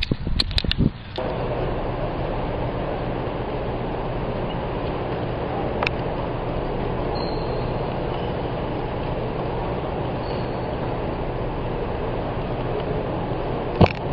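Steady hum and rushing background noise of a gymnasium, with a few clicks and knocks in the first second and one sharp knock near the end.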